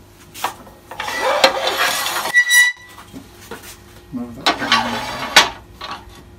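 Metal scraping along a wood lathe's bed as the banjo (tool-rest base) is slid into position, with a short ringing metallic clink partway through and a second scrape ending in a knock near the end.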